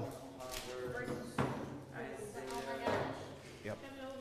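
Quiet, indistinct talking in a large, echoing hall, with two short knocks about a second and a half apart.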